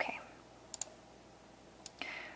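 A few faint computer clicks in a quiet room: two in quick succession about three-quarters of a second in, and a single one near the end.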